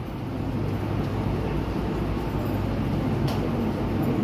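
Steady background noise of a large hall, with a constant low hum and a single click about three seconds in.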